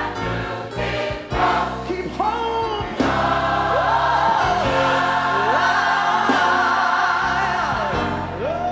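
Large gospel mass choir singing with accompaniment; from about three seconds in the choir holds a long chord.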